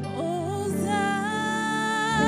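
A woman singing a slow worship song, sliding up into a long held note with vibrato, over a soft sustained instrumental accompaniment.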